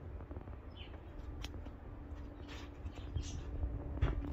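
A few faint, short bird chirps over a steady low background rumble, with a single sharp click about one and a half seconds in.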